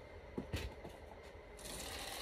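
Faint handling sounds: a couple of light knocks about half a second in, then a clear plastic bag holding a pair of foam slides starts to rustle near the end.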